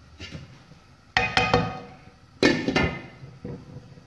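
A glass cookware lid with a steel knob being set down on a non-stick pan: two sharp clinks a little over a second apart, each ringing briefly.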